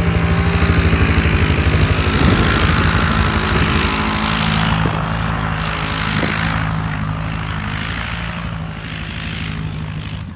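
ATV engine held at steady high revs while the quad spins its wheels through deep snow, with a hiss of thrown snow over it. The sound gradually fades over the second half as the machine moves off.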